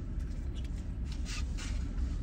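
A bite of barbecued pork rib being chewed, with a few soft mouth clicks, over the steady low hum of a car cabin.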